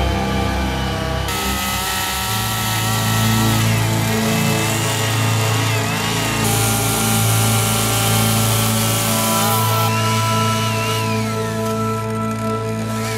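Petrol chainsaw cutting and carving into a wood block, its pitch shifting under load, heard together with background music.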